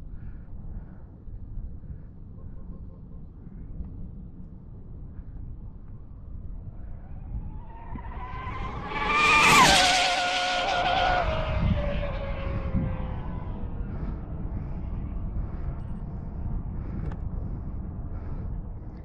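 Radio-controlled speed-run car driven by three brushless electric motors on 8S batteries making a high-speed pass. Its high whine rises and grows louder as it approaches, peaks about nine to ten seconds in, then drops sharply in pitch as it goes by and fades over the next few seconds. A steady low rumble runs underneath throughout.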